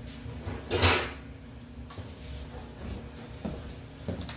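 A short scraping knock about a second in, then fainter handling noises: something being moved or gathered up out of sight.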